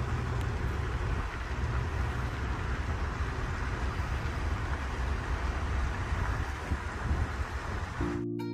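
Wind rumbling on the microphone over a steady hiss of outdoor ambience.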